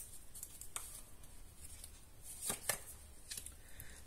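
Tarot cards being shuffled by hand: a faint rustle of cards with scattered soft clicks and a short run of louder snaps about two and a half seconds in. A card is then drawn and laid face up on the cloth.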